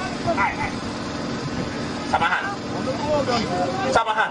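A man's voice speaking through a public-address microphone, with other voices behind it and a steady low hum underneath.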